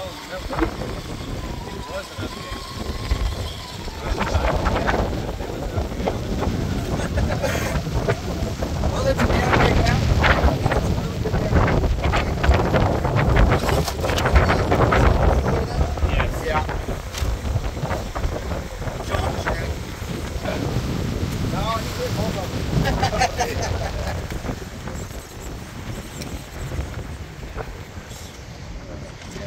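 Strong wind buffeting the microphone in gusts, with people talking in the background.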